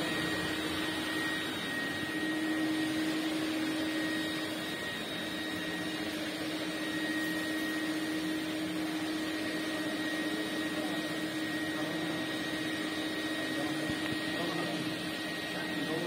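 Eureka Forbes Pro Vac WD 77 commercial wet-and-dry vacuum cleaner running steadily, a constant hum with a thin high whine over the rush of suction, as its floor wand is pushed across carpet.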